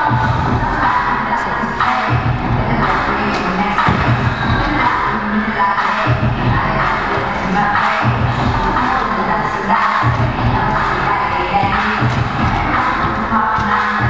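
Backing music with a steady, repeating beat, and an audience cheering and shouting over it.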